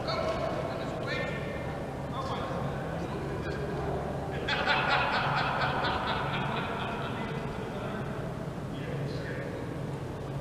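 Background voices of people talking in a large gymnasium hall, with a louder stretch of voices about halfway through, over a steady low hum.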